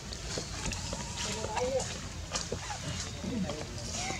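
A few short vocal calls gliding up and down in pitch, over a steady low background rumble with scattered brief ticks.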